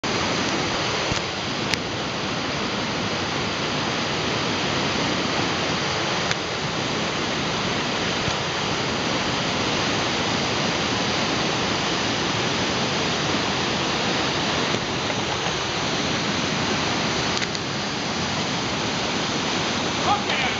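Whitewater rapid: river water pouring over a small drop and around boulders, a loud, steady rushing roar.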